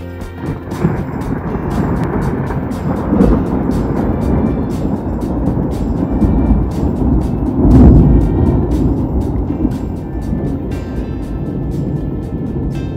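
Long rolling rumble of thunder that starts about half a second in, swells around three seconds and most loudly near eight seconds, then eases off, over background music with a steady beat.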